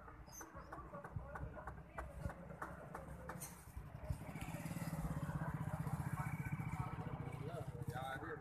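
Outdoor ambience with scattered light clicks and knocks. From about halfway in, a motor vehicle engine runs with a steady low pulse and grows louder.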